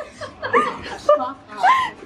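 Women's voices talking and chuckling, in short broken bursts.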